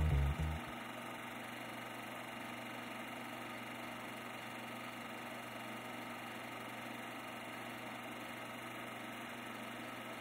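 A music track cuts off about half a second in, leaving a faint, steady hum with no other sounds.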